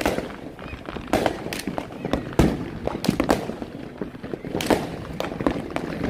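Aerial fireworks going off in a rapid, irregular string of bangs and crackles, some near and loud, others distant.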